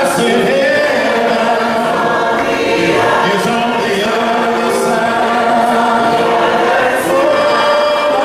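Choir singing a cappella, several voices in harmony holding long, sustained notes.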